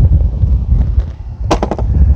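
Low rumble of wind and handling on the microphone, with a quick run of sharp clicks about one and a half seconds in.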